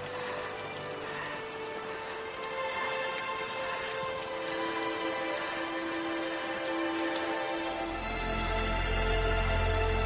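Steady rain falling, under a film score of long held notes; a deep bass swell comes in near the end.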